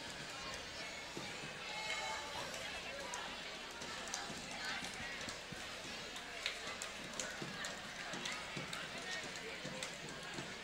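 Crowd chatter in a school gymnasium during a basketball game, a steady murmur of voices with scattered short knocks and squeaks from the court; one louder knock comes about six and a half seconds in.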